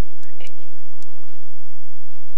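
A faint whisper in the first half second, then a soft click about a second in, over steady hiss and a low steady hum.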